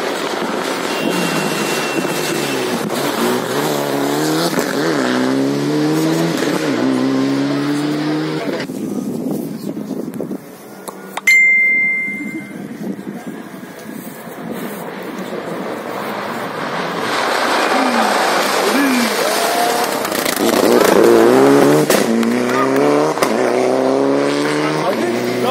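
Rally cars at full throttle on a tarmac stage: the first accelerates hard, its engine note climbing and dropping through several gear changes as it passes. About eleven seconds in comes a sharp click with a short high beep. A second car then approaches, engine revving up and down and growing louder towards the end.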